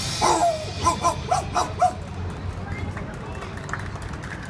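A break in the music filled with about six short shouted calls in quick succession from voices at the stage, followed by fainter claps in the latter half.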